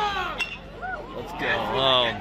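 Voices and shouting from the ballpark crowd, with one sharp metallic ping of an aluminium college bat striking the ball about half a second in. The shouting swells near the end as the ball is put in play.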